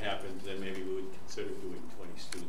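A man's voice talking indistinctly, with a long drawn-out vowel in the first second and a shorter phrase after a brief pause.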